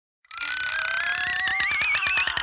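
Cartoon sound effect: a warbling whistle that climbs in pitch over a run of clicks that speeds up, starting about a third of a second in.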